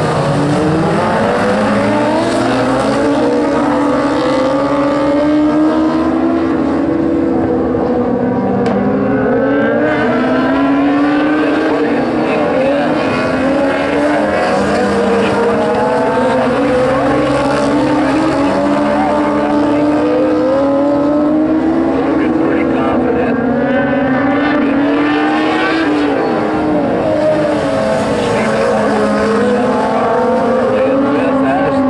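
A pack of dwarf race cars, small coupes powered by motorcycle engines, racing on a dirt oval: several engines at once, revving up and down, their pitch continually rising and falling as the cars run through the corners and straights and pass by.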